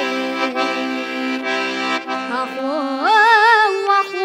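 Accordion holding sustained chords of a Kazakh folk song. About three seconds in, a boy's singing voice enters, sliding up into a held note with vibrato over the accordion.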